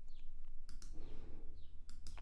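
Computer mouse clicking twice, once under a second in and once near the end, over a faint low hum.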